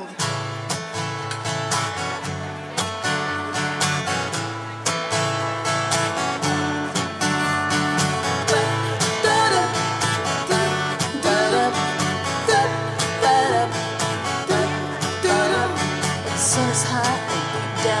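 Live country-style song intro played by a band, led by steadily strummed acoustic guitar. Singing comes in at the very end.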